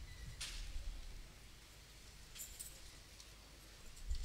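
Faint low rumble with a brief hiss about half a second in and a few light clinks about two and a half seconds in.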